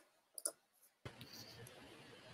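Two faint short clicks close together about half a second in. About a second in, a faint steady hiss of room noise from an open microphone begins.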